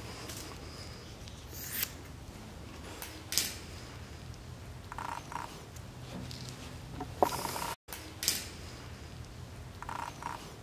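Scissors cutting excess woven fiberglass cloth, a few short, soft snips and rustles spread apart, over a low steady hum.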